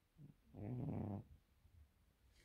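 Sleeping cat making one low, drawn-out sleepy sound about half a second in, with a shorter, fainter one just before it.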